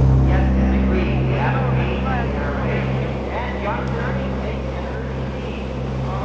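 Racing go-kart engines running together in a steady low drone that grows slightly quieter over the seconds, with faint voices over it.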